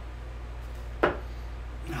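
A Red Dragon Snakebite 3 steel-tip dart striking a dartboard: one sharp thud about a second in.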